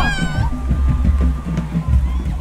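Marching band music, with low drums and low brass keeping a repeating pattern. A high sound slides down in pitch at the very start.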